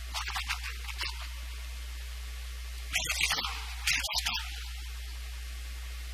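Steady low electrical hum and hiss of a lecture recording, broken by three short bursts of a man's speech: in the first second, at about three seconds and just before four seconds.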